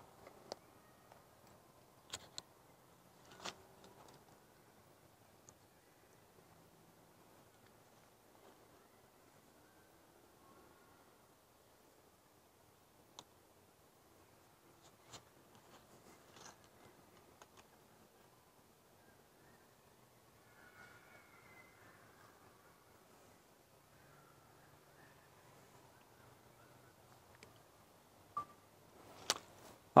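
Handling noise picked up on a clip-on wireless lavalier microphone while a phone is fitted onto a tripod: faint hiss with a few scattered sharp clicks and small knocks, the loudest in the first few seconds and just before the end.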